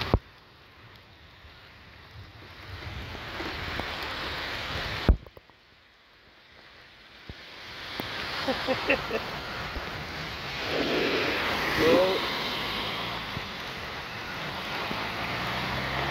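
Heavy rain hissing down on a flooded street. Two sharp clicks, at the start and about five seconds in, are each followed by a brief drop to near silence, and the rain then builds up again.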